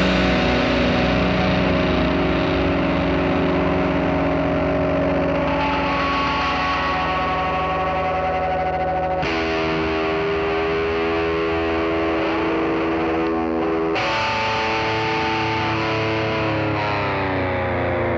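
Distorted electric guitar holding long, droning chords that ring on, changing chord at about nine seconds and again at about fourteen seconds in, as a 1990s alternative rock track winds down.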